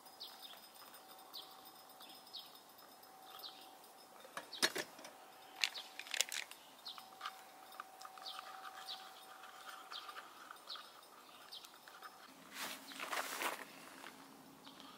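A small bird chirping over and over, short falling calls about once a second. A few sharp metallic clinks of a spoon against a small metal pot of milk come midway, and there is a brief rustle near the end.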